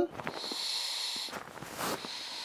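Air hissing out of the Pillowdy hoodie's inflatable neck pillow as its valve is pressed to deflate it. A steady hiss lasts about a second and a half, followed by a brief louder burst near the end.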